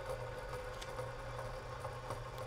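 Steady low background hum with a faint constant tone, and no distinct events.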